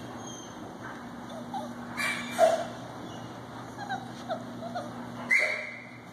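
A litter of young puppies giving small high yips and whimpers, with two louder sharp yelps, one about two seconds in and one just after five seconds.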